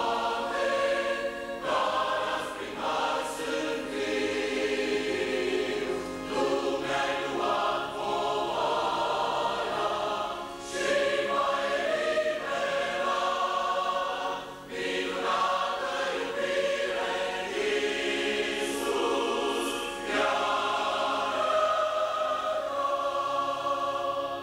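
Mixed church choir of men's and women's voices singing a hymn in long held phrases, with brief dips between phrases every few seconds.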